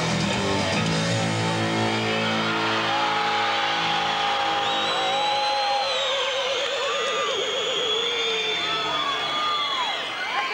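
Live rock band's electric guitars ringing out on sustained chords that die away over the first few seconds, as at a song's end. High held tones and rising-and-falling whistles follow over the arena's noise.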